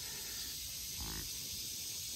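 Steady chorus of insects such as crickets, with one brief, low, pitched voice-like sound about a second in.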